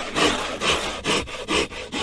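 Hand saw cutting through a wooden board in steady back-and-forth strokes, about two a second.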